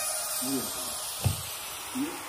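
Steady background hiss with a faint, low voice murmuring briefly, and one soft thump a little over a second in.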